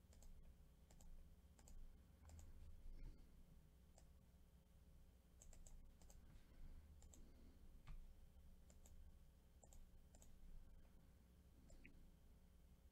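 Faint, irregular clicking of a computer mouse and keyboard, some clicks coming in quick pairs, over quiet room tone.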